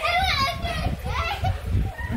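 A child's high-pitched voice calling out twice while children play, over dull low thuds of bouncing on a trampoline.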